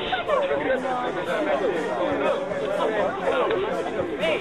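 A group of people chatting at once, many voices overlapping with no single speaker standing out.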